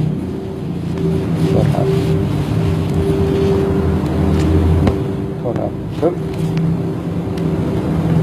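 A steady low mechanical hum with a constant pitch, under a few short spoken words.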